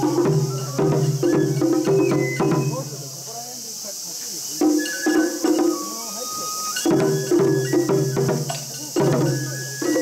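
Mikoshi bearers chanting in unison in short rhythmic bursts as they carry the portable shrine, in several loud phrases with brief lulls between them. Sharp clacks and a few short high tones sound through the chanting.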